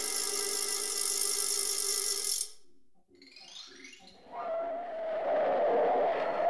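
Cartoon sound effects: a dense buzzing whir cuts off suddenly about two and a half seconds in. Faint falling swoops follow, then a rising whoosh near the end.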